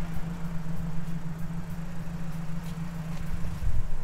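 Mazdaspeed 3's turbocharged four-cylinder engine idling steadily with a low hum.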